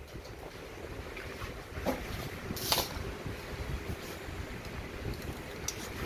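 Low steady rumble of background and handling noise, with a few short clicks and rustles, the sharpest about three seconds in.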